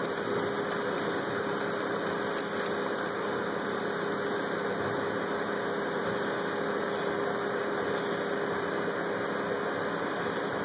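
Steady mechanical hum with a constant droning tone over an even hiss.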